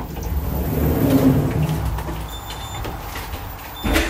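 Orona elevator car running: a low rumble swells over the first second or so and then eases off. Short high electronic beeps come from the call buttons being pressed, and there is a sharp knock just before the end.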